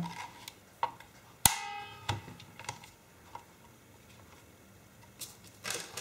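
Plastic clicks and knocks of 18650 lithium-ion cells being handled and pushed into the slots of a LiitoKala Lii-500 battery charger. The loudest is a sharp click about one and a half seconds in with a short ringing tail, followed by a few lighter ticks, and more small clicks near the end.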